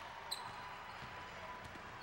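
Basketball gym ambience: a steady crowd murmur, one short high-pitched sneaker squeak on the hardwood floor about a third of a second in, and faint thumps of the ball being dribbled up the court.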